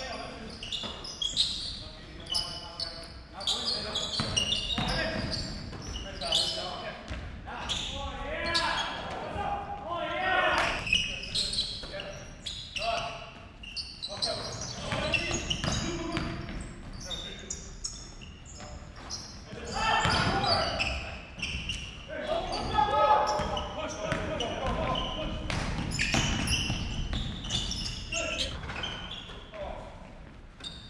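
A basketball bouncing on a hardwood gym floor during live play, with players' indistinct shouts and calls in the gym.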